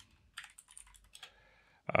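Computer keyboard typing: a short run of light, irregular keystrokes.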